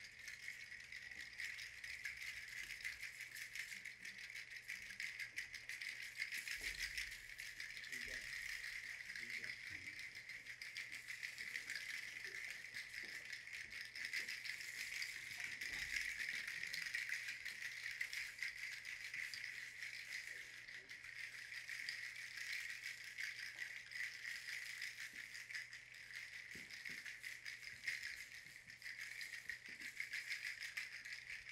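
A shaken rattle or shaker played as a continuous, fairly faint hissing rattle with no clear beat, accompanying the dance.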